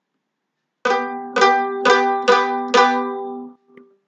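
Mandolin playing a B and G double stop, a partial G chord, with both notes ringing together. It is picked five times about half a second apart, then left to ring out and fade.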